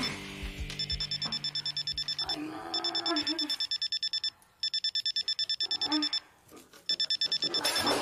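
Alarm clock beeping: rapid high-pitched beeps in bursts of about a second and a half, repeating after short pauses. Soft background music fades out in the first couple of seconds, and a burst of noise comes in near the end.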